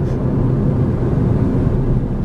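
Steady low road and engine noise heard inside the cabin of a Ford car driving at speed.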